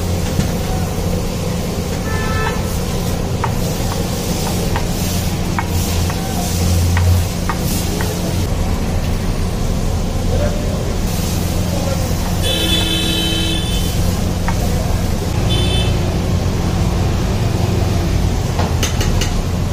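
Busy street traffic with a steady low rumble and vehicle horns honking: a short honk about two seconds in, a longer one a little past halfway, and another short one soon after, over scattered light clicks.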